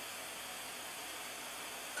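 Steady, even low hiss of background noise, with no clicks or other events.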